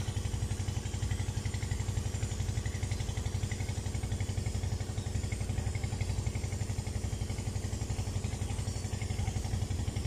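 A small engine running steadily at one even speed, a low hum with a fast, regular pulse.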